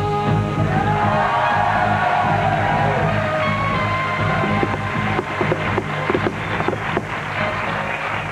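Theme music introducing a TV election-update segment, played over the segment's title graphic.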